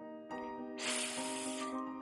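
A woman's drawn-out "sss" hiss, the sound of the letter S, lasting about a second in the middle, over soft background music with held notes.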